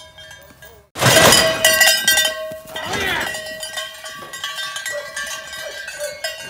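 Cowbells on several moving cattle clanking and ringing, a jumble of overlapping bell tones that gets much louder about a second in.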